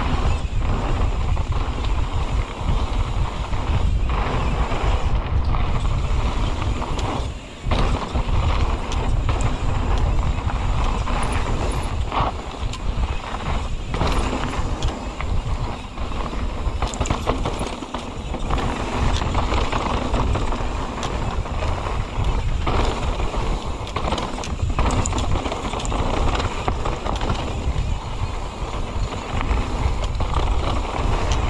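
Wind buffeting the camera microphone as a mountain bike rolls fast down a dirt forest singletrack, with tyre noise and frequent rattles and knocks from the bike over bumps. The noise drops briefly about seven and a half seconds in.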